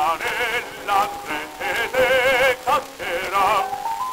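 Baritone singing an operatic barcarolle with a wide vibrato in short phrases, heard through an acoustic-era 1904 disc recording with surface hiss.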